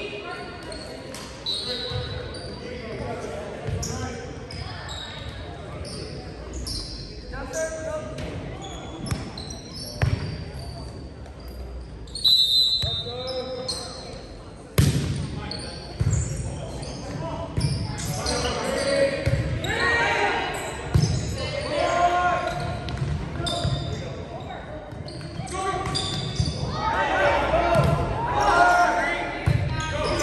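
A volleyball being bounced and struck on a hardwood gym floor, with sharp thumps at intervals, among players' voices calling out, all echoing in a large gymnasium. The voices grow busier in the last few seconds as play gets going.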